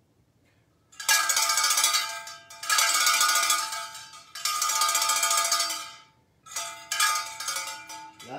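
A metal bell shaken by hand, clanging in about four bouts of a second or so each, starting about a second in.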